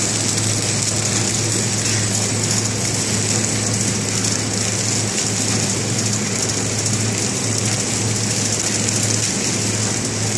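KT 600 flow-wrap packing machine running steadily while wrapping magazines in continuous film, with no cutter strokes. It makes a constant motor hum under an even mechanical hiss and rattle.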